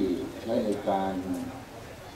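A man's voice speaking slowly in Thai, one drawn-out phrase of a sermon, trailing off in a pause near the end.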